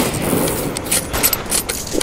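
Metallic clicks and rattles from a game-style rifle-handling sound effect: a sharp hit at the start, then a quick run of clicks in the second half.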